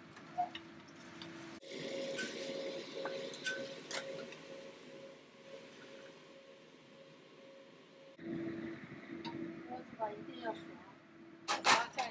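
Cooking sounds at a stove: a wooden spatula lightly clinking and scraping in a nonstick wok, a few separate clicks, over a steady low hum, then one loud clatter near the end.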